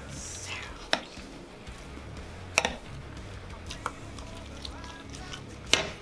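A metal spoon clicks sharply against a serving platter three times while a person eats: once about a second in, again midway, and once just before the end. Background music with a steady low beat plays throughout.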